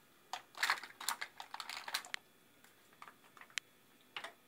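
Ragamuffin cat lapping water from a drinking glass: a quick run of small wet clicks and splashes for the first two seconds, then a few scattered clicks.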